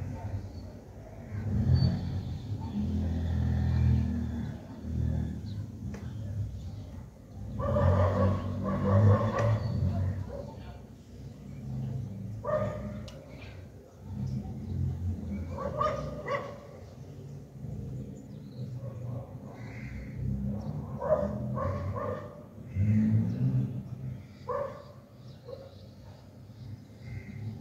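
A dog barking in short bursts, several times, over a steady low rumble of traffic from outside.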